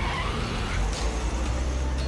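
Car engine accelerating hard under a pressed accelerator: a deep, steady rumble with a rushing sound through the first second.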